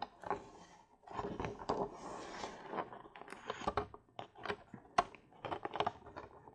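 A sheet of cardstock being handled and pressed down onto a mini-album hinge: soft paper rustling and rubbing, then a few short, sharp taps and clicks in the second half.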